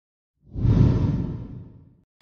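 A whoosh sound effect marking a transition. It starts about half a second in, is loudest at once, and fades away over about a second and a half.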